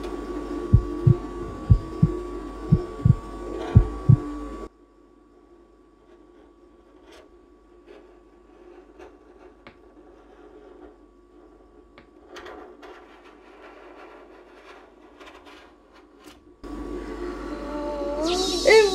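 A rolled ice cream machine's cold plate hums steadily, with about eight low thumps in the first four seconds. The hum cuts off suddenly about five seconds in, leaving faint scraping and clicking of a metal spatula pushing the frozen ice cream into a roll. The hum returns near the end.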